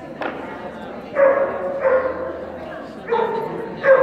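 A dog barking four times in two pairs, short and fairly high-pitched.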